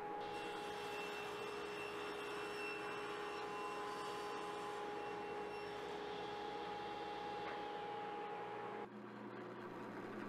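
Table saw running steadily with a fixed whine while a crosscut sled carries a stack of supports through the blade. Near the end it gives way to a quieter, lower hum from a drill press.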